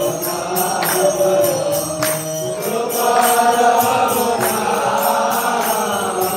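A man's voice chanting a devotional mantra in long, melodic phrases, accompanied by karatalas (small brass hand cymbals) struck in a steady rhythm.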